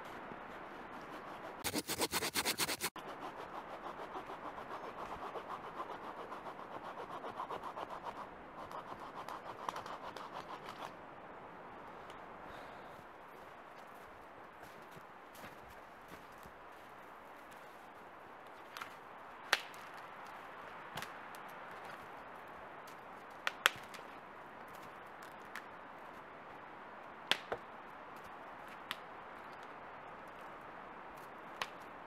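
Spruce branches being cut and broken off a fallen spruce trunk: a loud burst of rapid scraping strokes about two seconds in, several seconds of rasping, then sharp single cracks of twigs snapping every few seconds.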